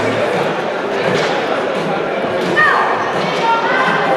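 Crowd chatter and shouting in a large hall around an armwrestling table. One voice gives a falling shout about two and a half seconds in, and further shouts come near the end.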